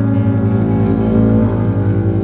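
Background music of sustained, layered tones over a low note that pulses evenly.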